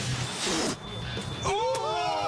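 A short, forceful puff of breath as a cockroach is spat out of the mouth. About a second later comes a long, sliding vocal over background music.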